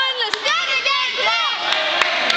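Spectators shouting at a wrestling bout: a run of loud, high-pitched yells, each rising and falling in pitch, overlapping one another and dying down near the end.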